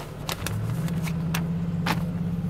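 Car engine idling with a steady low hum, with a few light clicks and rustles of paper being handled.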